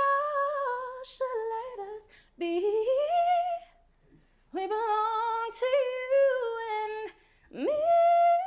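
A woman's voice singing unaccompanied: wordless runs and held notes that waver with vibrato, in four phrases with short breaths between them, the last sliding up in pitch near the end.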